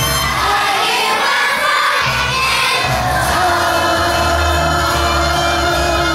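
A choir of young children singing together over musical accompaniment, holding one long note through the second half.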